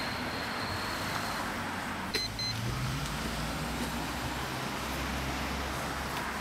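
A car driving past on a street, its engine and tyres a steady low rumble that swells in the middle. Just after two seconds in there is a click and two short high beeps.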